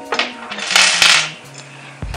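Small metal parts clinking and scraping on a desktop, with a louder rasp about halfway through: small Allen keys set down and a metal camera cage picked up and handled.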